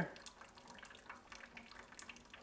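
Faint, irregular dripping of water leaking down through the ceiling from a test-filled shower pan above.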